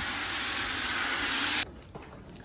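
Garden hose running water into a plastic bucket, a steady hiss that cuts off abruptly about one and a half seconds in.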